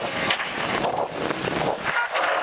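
Toyota AE86 rally car slowing hard and changing down for a tight square right: the engine is off the throttle, with loud tyre, road and wind noise and a few short sharp cracks.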